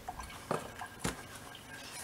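Two faint sharp clicks about half a second apart from a plastic spice shaker being opened and handled as garlic powder is sprinkled over a raw chicken.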